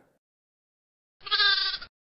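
A single short animal bleat, wavering in pitch, about a second into otherwise silent audio.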